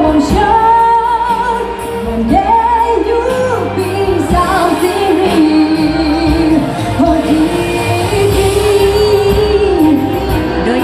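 Young female singer singing a pop ballad live into a handheld microphone over a recorded backing track, amplified through a PA. Her melody rises and falls in the first half, then settles into a long held note with vibrato near the end.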